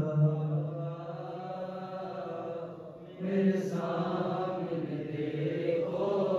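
Men's voices chanting a noha, a Shia mourning lament, in long held notes. The chant thins out and dips about three seconds in, then comes back.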